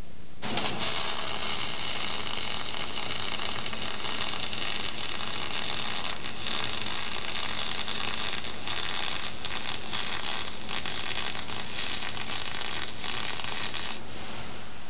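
A MIG (gas metal arc) welding arc burning steadily: a loud, even hiss with constant crackle that starts abruptly about half a second in and cuts off just before the end, heard over old videotape hiss.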